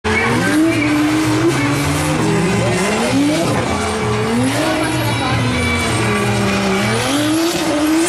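Drift car's engine revving hard, its pitch repeatedly climbing and dropping back as it accelerates and is worked on the throttle, with tyres squealing as the car slides sideways.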